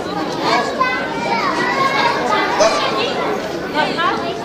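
Several children talking and calling out over one another as they play, high voices overlapping in a busy jumble.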